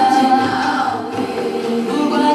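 A choir of children and young people singing together, several voices holding long notes that shift to a new chord about halfway through.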